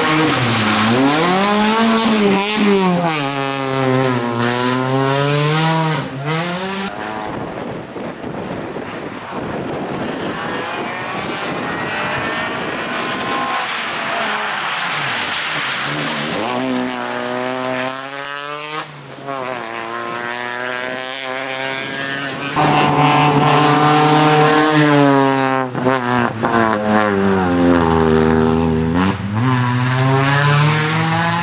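A Peugeot 206 rally car driven hard on a wet stage, its engine revs climbing and dropping again and again through gear changes and lifts. Through the middle there is a rushing hiss of tyres throwing water, with the engine fainter.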